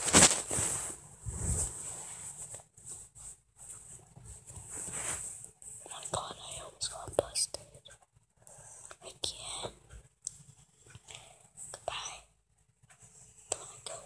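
A person whispering in short bits close to the microphone, with gaps between. A loud rustle of handling noise comes right at the start.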